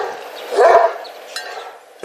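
A Kangal shepherd dog barking once, about half a second in.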